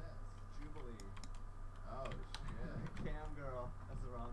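Computer keyboard keys clicking in short, irregular taps, as when keyboard shortcuts are pressed while editing in a drawing program.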